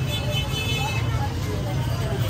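Street crowd noise: scattered men's voices over the steady low rumble of a vehicle engine close by.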